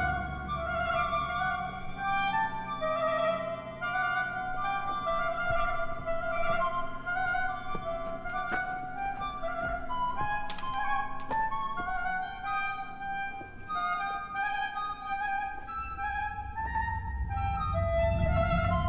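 Live orchestral music from a contemporary opera score: several held, overlapping high notes, woodwind-like, moving slowly in steps. A low rumble swells back in near the end.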